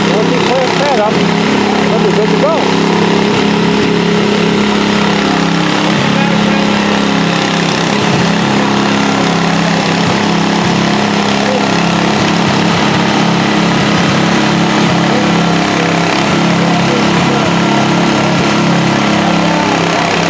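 An engine idling steadily, a constant drone, with indistinct voices over it in the first few seconds.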